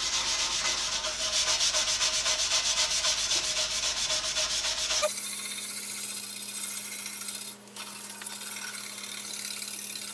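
A stiff scrub brush scrubbing a cast iron bandsaw table wet with Boeshield T-9, in rapid back-and-forth strokes, lifting rust. About halfway through, the sound changes suddenly to softer, steadier rubbing with a low steady hum underneath.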